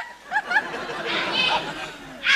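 Studio audience laughing, a spread-out wash of laughter and chatter, with a few short voice sounds near the start.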